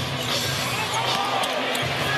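Basketball dribbling on a hardwood court over a steady arena crowd murmur.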